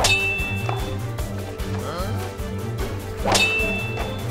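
Two identical metallic clang-and-ding sound effects, one at the start and one about three seconds later, each ringing briefly on a high tone. Background music with a steady beat plays under them.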